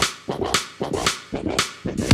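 Outro logo sting: a quick run of sharp, whip-like percussive hits, about three or four a second, each dying away fast, leading into upbeat music.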